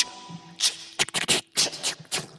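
The close of a 1970s pop recording: the singing stops and a sparse, irregular run of short scratchy 'ch-ch-ch' strokes plays over a faint held note, dying away.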